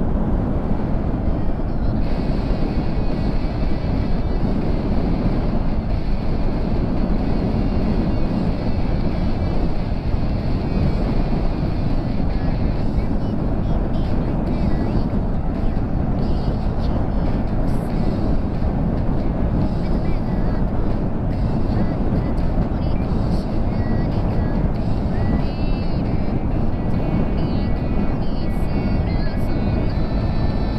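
Motorcycle at expressway speed: a steady rush of wind on the microphone mixed with engine and tyre noise.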